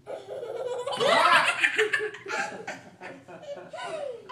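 A toddler laughing hard: a loud, high-pitched burst of laughter about a second in, followed by short broken bursts of laughter.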